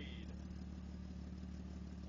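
Engine of a four-wheel-drive SUV stuck to its axles in mud, running steadily at a low, even speed without revving.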